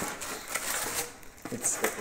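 Polystyrene foam packaging being handled and lifted out of a microwave oven, rubbing with a few light knocks.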